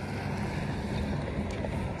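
Wind buffeting the microphone of a handheld phone outdoors: a steady rumble and hiss.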